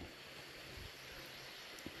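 Faint steady background hiss, with a small click near the end.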